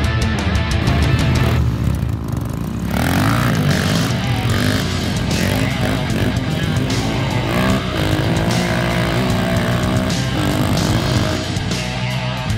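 Rock music, with an off-road motorcycle's engine revving over it from about three seconds in, its revs rising and falling.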